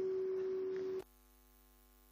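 A steady electrical hum tone over faint background noise that cuts off abruptly about a second in, leaving only a very faint, many-toned mains hum.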